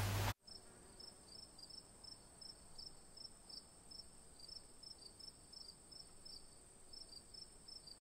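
Faint cricket chirping, short high chirps repeating evenly about three times a second. The room sound drops out abruptly just after the start, leaving only the chirps.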